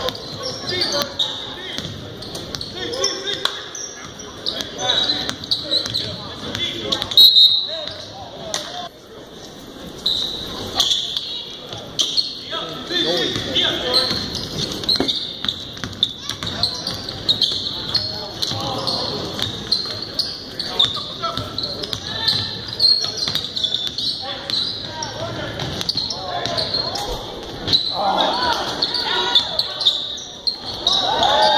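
Basketball game in a gym: the ball bouncing as it is dribbled, shoes on the hardwood floor, and scattered voices of players and spectators, all echoing in the large hall.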